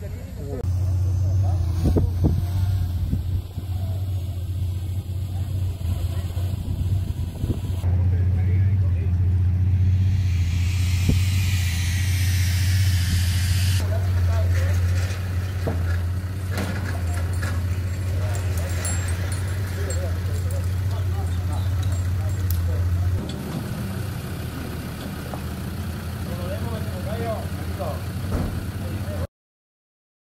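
A steady low engine hum with people talking in the background; the hum drops away about 23 seconds in. A brief hiss that falls in pitch comes between about 10 and 14 seconds in, and the sound cuts to silence just before the end.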